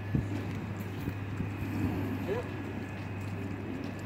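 A steady low hum with faint, distant voices over it, and a single sharp click just after the start.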